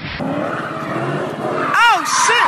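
Car tyres squealing in a short rising-and-falling squeal near the end, after a stretch of mixed car and street noise.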